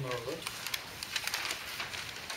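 Quick series of scratchy, rustling strokes at a paper flip chart pad, from a marker pen on the paper and the sheets being handled, after a brief voice sound at the very start.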